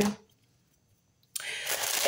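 About a second of dead silence, then deli paper wrapping rustling and crinkling as hands pull it open.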